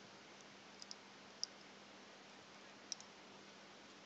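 Near silence: a faint steady hiss and low hum, broken by a few small, sharp, high-pitched clicks, the two loudest about a second and a half apart.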